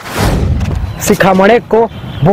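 A deep boom that hits suddenly and whose low rumble dies away over about a second, followed by a man's voice.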